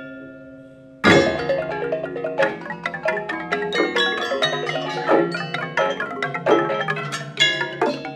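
A Balinese gamelan of bronze metallophones. Held tones ring and fade for about a second, then the whole ensemble comes back in with one loud struck accent. It carries on in dense, rapid interlocking strokes over a steady low hum.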